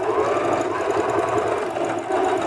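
Singer Patchwork electronic sewing machine running steadily at speed, sewing a straight-stitch test seam through fabric with a fast, even run of needle strokes.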